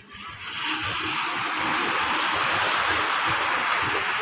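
Steady rush of seawater, coming up quickly in the first half second and then holding even, as a fishing net is hauled through the shallows.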